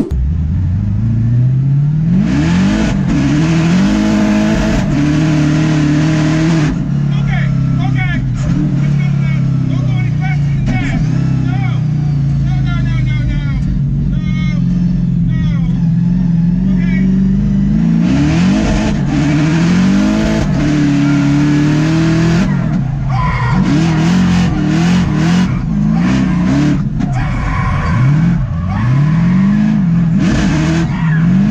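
A 1500-horsepower truck's engine revving hard, heard from inside the cabin. It climbs in pitch in repeated steps and drops back, holds high through the middle, then sweeps up and down again, with tyre noise as it drifts and a passenger shouting.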